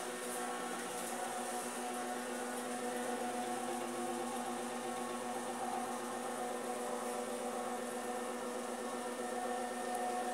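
A steady electric hum made of several even tones, unchanging throughout.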